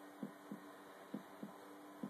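Faint heartbeat sound effect opening the dance routine's music: low double thumps about a third of a second apart, repeating about once a second over a steady hum.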